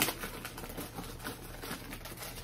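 Paperboard perfume box being opened and handled: a sharp click at the start, then faint scratchy rustling and small ticks.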